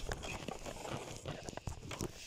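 Footsteps of a person walking over grass and ground: irregular soft thuds and rustles, mixed with handling noise from a handheld camera that is being swung about.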